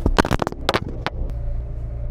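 A handheld camera being fumbled and dropped, giving about six knocks and clicks in the first second and a half, over the low steady hum of a car's cabin.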